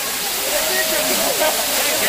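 Waterfall pouring down onto people standing under it: a loud, steady rush of falling, splashing water, with voices over it.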